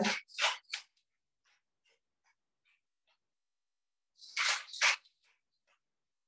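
Faint, quick crunching ticks of a pepper mill being twisted to crack black pepper over a bowl. Near the end come two short, louder breathy bursts.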